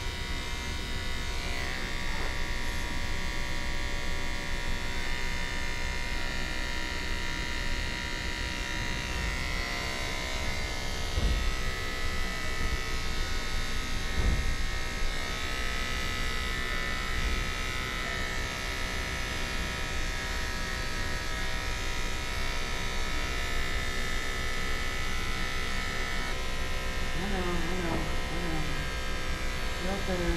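Electric dog-grooming clipper running steadily at a constant pitch as it trims the fur on a Shih Tzu's leg.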